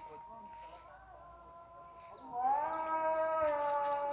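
A voice singing or chanting in long held notes. It is faint at first, then swells much louder a little past halfway, sliding up into a new sustained note.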